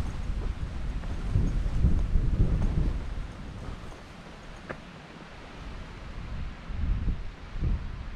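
Wind buffeting the microphone in uneven gusts, a low rumble that is strongest about two seconds in and picks up again near the end.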